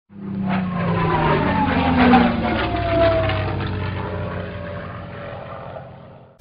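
A propeller aircraft's engine flying past: it swells in the first second, its pitch falls as it passes, and it fades away over the last few seconds.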